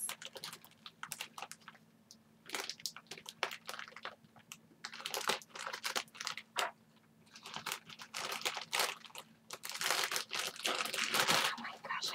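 Packaging being handled and unwrapped: irregular rustling and crinkling in spells, busiest near the end, over a faint steady hum.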